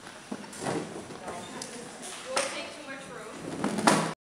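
People in a hall talking and stirring, with several sharp knocks of shoes and chairs on a wooden floor as they stand; the loudest knock comes near the end.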